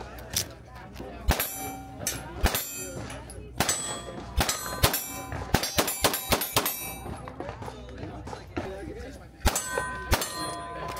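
A string of handgun shots, about a dozen in irregular succession, each followed by the short metallic ring of a steel target plate being hit. Another shot and ring come near the end.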